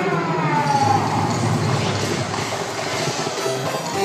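Light-show soundtrack playing over park loudspeakers: a sweep of falling tones in the first second, then a rushing swell with a low rumble underneath.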